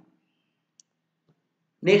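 Near silence with a single faint, short click about a second in; a man's voice starts near the end.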